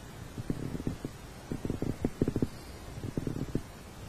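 Stomach gurgling picked up close by a lapel microphone clipped to the chest: irregular low gurgles and bumps in short clusters.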